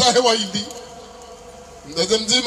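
A man's voice amplified through a microphone and loudspeaker system, breaking off about half a second in. A quieter pause with only faint background sound follows.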